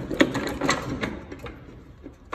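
Metal gears and shift forks of a Volkswagen 0AM dual-clutch transmission clicking and clinking against each other as the gear shafts are worked loose by hand. A quick run of clicks comes in the first second or so, then a few scattered ones.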